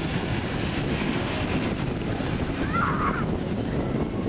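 Wind buffeting the camcorder microphone, a steady low rumbling noise, with a brief faint higher sound about three seconds in.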